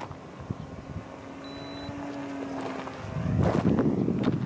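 Radio-controlled Icon A5 model airplane's motor and propeller droning at a steady pitch, growing louder as the model comes in. Near the end, loud rough wind noise buffets the microphone.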